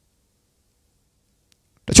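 Near silence during a pause in speech, then a man starts speaking into a handheld microphone near the end.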